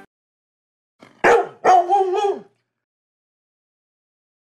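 A Labrador barking twice about a second in, a short bark followed by a longer one. It is a stock sound effect.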